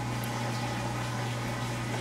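Steady low hum with an even hiss underneath and no distinct event: background room noise.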